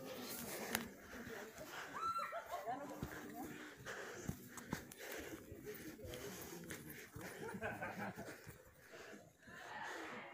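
Faint, distant voices and shouts of people on the course, with a few scattered clicks and rustles close by.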